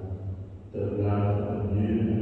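A priest's voice continuing the words of consecration over the chalice, with a short pause about half a second in before the voice resumes.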